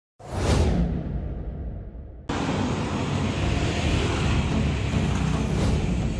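An intro whoosh sound effect that sweeps up and falls away over the first two seconds. About two seconds in it cuts suddenly to steady road traffic noise.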